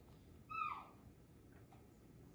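A single brief, high-pitched vocal call, falling slightly in pitch, about half a second in, against a quiet room.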